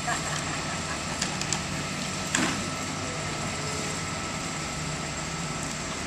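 Steady low mechanical drone, with a single knock about two and a half seconds in as the enclosed cargo trailer's loading ramp comes to rest.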